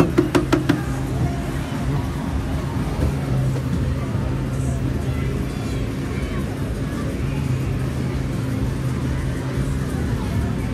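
Funfair din: a steady low drone of machinery and music with voices mixed in. A quick run of sharp clicks comes right at the start.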